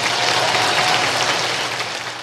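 Audience applauding, a dense steady clapping that starts to fade out near the end.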